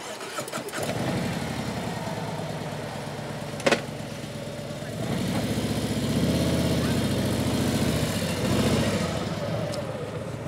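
Large touring motorcycle engine starting about a second in and idling with a low, even beat. A single sharp clunk comes in the middle, typical of the bike dropping into gear, and then the engine revs up and pulls away past the microphone.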